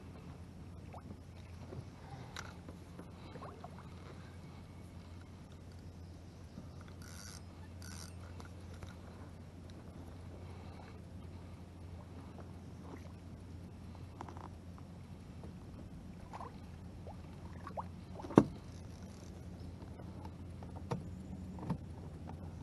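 A steady low hum with scattered clicks and knocks of a spinning rod and reel being worked from a small boat, the loudest a sharp knock about eighteen seconds in.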